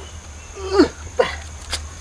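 A man's two short straining grunts, each falling sharply in pitch, as he heaves up a heavy bunch of bananas, then a single sharp click.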